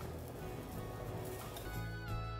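Quiet background music fading in, with held notes coming up near the end.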